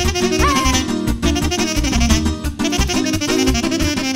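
Live Banat folk dance music: an instrumental passage with a saxophone playing fast, ornamented melodic runs over the band's steady beat.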